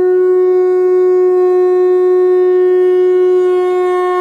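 A single long, loud note blown on a horn-like instrument, held at one unwavering pitch with strong overtones.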